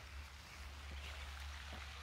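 Faint, steady splashing hiss of a small spray fountain in a pond, with a low rumble underneath.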